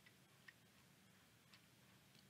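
Near silence with three faint, short clicks from a computer mouse about a second apart, as the code is scrolled.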